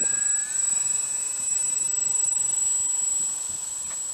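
Electric motors of a radio-controlled Junkers tri-motor model (three E-flite 10-size motors) whining steadily as it taxis on the runway. The pitch dips slightly about half a second in and then holds, and the sound grows a little fainter near the end.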